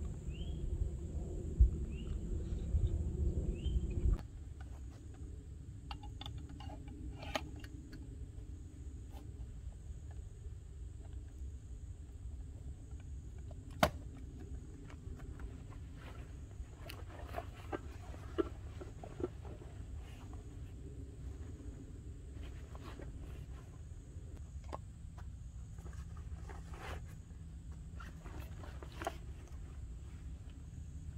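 A backpack being handled and packed on a wooden picnic table: scattered rustles of nylon fabric and short clicks and knocks of straps, buckles and gear. A louder low rumble fills the first four seconds, then drops away suddenly.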